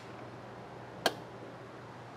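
One sharp metallic click about a second in from the travel trailer's entry-door hold-open latch as the door is worked against its catch on the trailer wall.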